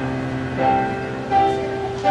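Piano music: slow, sustained chords, with a new chord struck about every three-quarters of a second.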